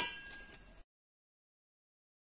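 A metallic clang ringing and fading away in under a second, then the sound cuts off to dead silence.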